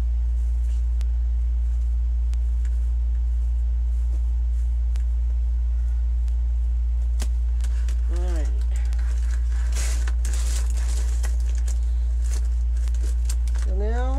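A steady low hum throughout, with scattered light clicks of clothespins being pulled off a deco-mesh rose and handled, and a crinkly rustle of the mesh about ten seconds in.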